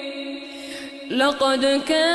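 Melodic Quran recitation by a male reciter: a long held note fades away, and after a short pause a new chanted phrase begins about a second in, its pitch gliding and ornamented.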